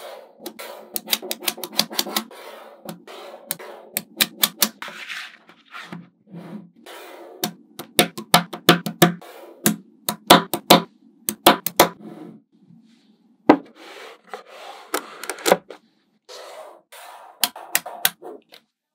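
Small neodymium magnetic balls clicking and snapping together in quick, irregular runs as slabs of them are pressed and joined by hand, with a light rattle between the clicks.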